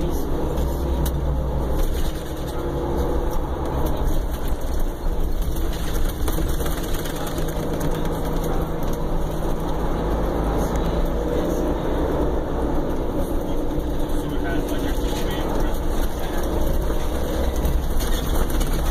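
Cabin sound of a 2015 Prevost commuter coach underway: a steady low diesel-engine drone with road and tyre noise.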